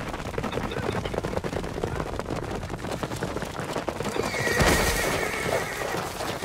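Several horses galloping on a dirt track, with quick hoofbeats throughout. About four seconds in, a horse gives a loud whinny, the loudest sound of the stretch.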